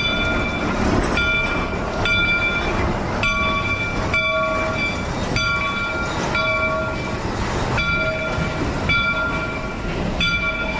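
Steam locomotive bell ringing about once a second, each stroke fading, over the steady rumble of the train's open excursion cars rolling past.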